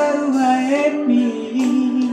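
A song with a voice singing long held notes that step up and down in pitch.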